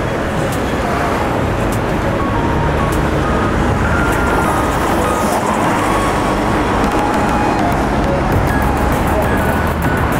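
Busy city street ambience: a steady rumble of road traffic on the avenue, with voices of passers-by and some music mixed in.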